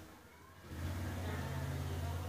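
A low, steady hum that sets in just under a second in, after a near-quiet start.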